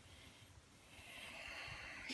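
A man's slow, faint breath while smoking a pipe: a soft hiss of air that builds from about a second in.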